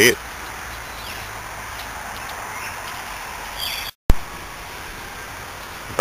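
Steady low background hum and hiss with no distinct event. About four seconds in, it drops out briefly to silence and a single sharp click follows where the recording is cut.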